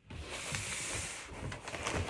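Cardboard shipping box being handled and its flaps opened: a continuous papery rustle and scrape.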